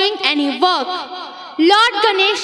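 A high-pitched female voice speaking, its pitch rising and falling in quick phrases.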